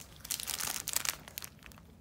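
Plastic bubble wrap crinkling and crackling as it is pulled off a pin, busiest in the first half and tailing off.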